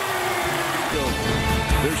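Basketball broadcast audio: arena crowd noise, then about a second in music comes in with a pulsing low beat, under the start of commentary.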